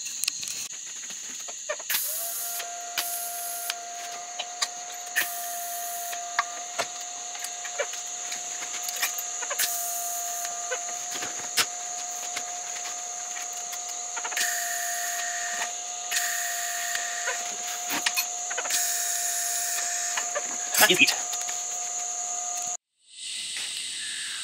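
Electric welding arc running on the steel oil-bag mount bosses of a chopper frame: a steady hiss with a thin steady whine, dotted with crackles and brighter surges, cutting off abruptly near the end.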